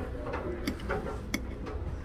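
A metal fork clinking against a ceramic plate: two sharp ticks about two-thirds of a second apart, over a faint low hum.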